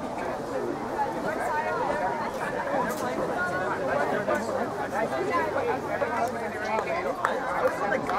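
Several girls' voices chattering over one another in a group, with a few sharp smacks near the end.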